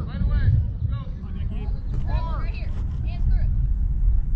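Several short, high-pitched shouted calls from people at a youth baseball game, over a steady low rumble.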